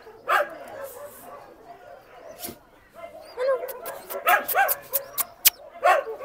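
Dogs barking and yelping in short, sharp calls, sparse at first and then in a quick cluster over the second half.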